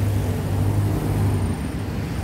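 Steady low engine drone of a passenger vehicle being ridden in the open air, over road and traffic noise; the drone eases off about a second and a half in.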